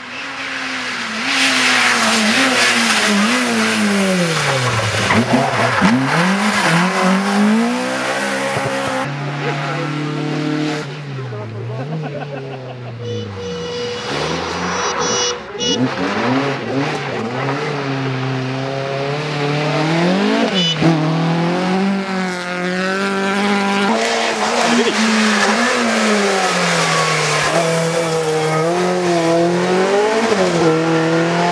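VW Golf Mk1 rally car engines revving at full throttle through the gears on a series of passes. The pitch climbs and drops again and again with each gear change and drive-by, with short breaks where one clip cuts to the next.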